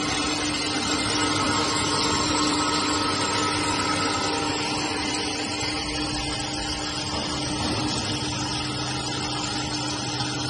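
Fish feed pellet extruder running steadily: a constant machine drone with one held mid-pitched tone, unchanging throughout.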